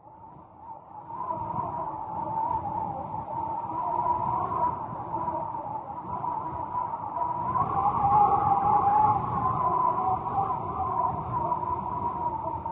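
Howling wind, fading in over the first two seconds, then a steady wavering whistle over a low rumble.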